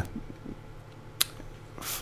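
Quiet pause with a faint steady low hum, a single sharp click about a second in, and a breath near the end.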